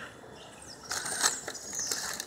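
Plastic snack packaging and cardboard boxes being handled and shifted, crinkling and clicking: a burst of rustles and crackles with small squeaks begins about a second in.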